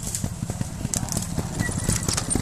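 Trials motorcycle's single-cylinder engine running at low revs with an uneven, knocking low beat, and a few sharp clicks about a second in.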